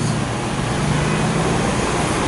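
Street traffic noise: a vehicle engine's steady low hum over an even hiss, with rain falling.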